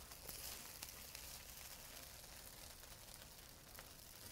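Very faint sizzle from a wok of stir-fry, with a few light clicks of the utensil as the food is lifted into a bowl.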